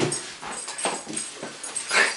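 Huskies whining in many short, irregular cries.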